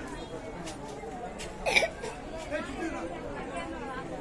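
People's voices chattering in a busy street. One short, loud burst cuts through just under two seconds in.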